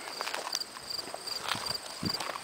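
Footsteps walking over short grass and bare dirt, a few soft knocks among them.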